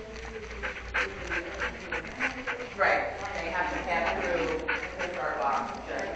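Dog panting quickly and close to the microphone, about four breaths a second, in the first half, followed by wavering voice-like sounds.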